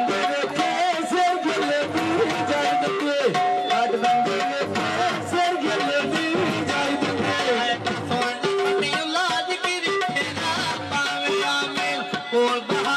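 Live Punjabi folk music in an instrumental passage: a melodic instrument lead over a steady beat, with no clear singing.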